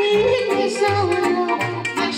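Live Romanian folk music through a sound system: a woman singing a wavering, ornamented melody into a microphone over an electronic organ with a steady, repeating bass line.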